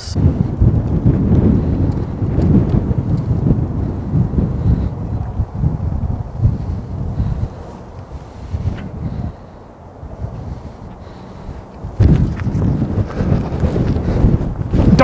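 Wind buffeting the microphone: a gusty low rumble that eases off about nine seconds in and comes back strongly near the end.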